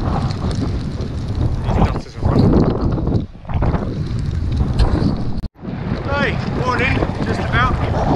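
Strong gusting wind buffeting a GoPro's microphone, a loud, rough low rumble that eases briefly a couple of times and cuts out for an instant about five and a half seconds in.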